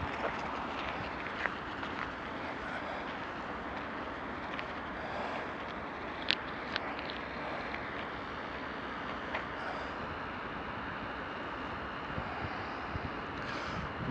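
Steady rushing outdoor noise, with a few faint clicks.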